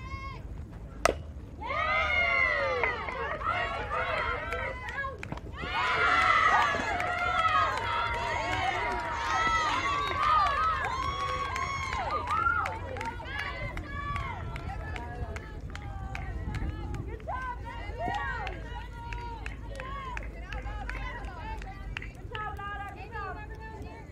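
A single sharp crack of a softball bat hitting the ball, followed by players and spectators shouting and cheering, loudest for the first ten seconds or so, then thinning to scattered calls.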